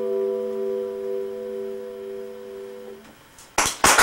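A chord held on an electronic keyboard, slowly fading out as the song ends, dying away about three seconds in. Near the end, clapping breaks out and swells into applause.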